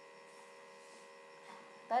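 Faint steady electrical mains hum, a few thin unchanging tones with no other sound, until a voice starts right at the end.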